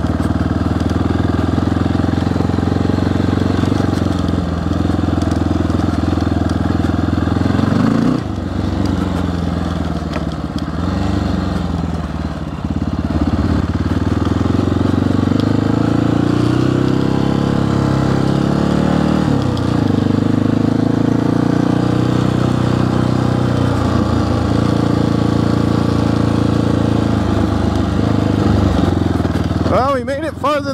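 1994 Honda XR650L's single-cylinder four-stroke engine running as the bike is ridden, its pitch falling and rising with the throttle several times through the middle stretch.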